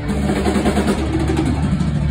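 Live rock band playing loud, with distorted electric guitars and bass holding a heavy, low sustained chord.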